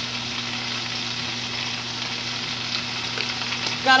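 Chopped cabbage frying in a skillet piled full of it: a steady sizzle.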